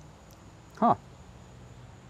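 A man's single short "huh" about a second in, falling in pitch, over otherwise quiet background.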